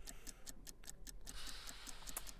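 Faint countdown-clock ticking sound effect, a steady run of quick, even ticks counting down to a price drop.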